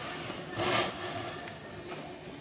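Packaging being handled in a cardboard box, with a short crinkling rustle of plastic bag about half a second in.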